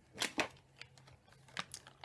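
A few light clicks and rustles, a couple in the first half second and a couple more near the end: empty product packaging being handled and lifted out of a bin.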